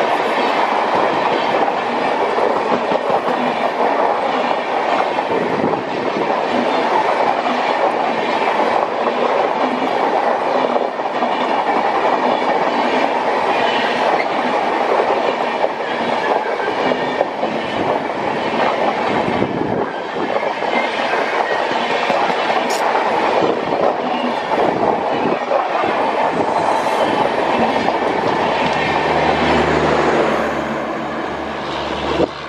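Passenger coaches of an express train rolling past close by at speed on a curve: a steady, loud rumble of wheels on rail with clickety-clack over the rail joints.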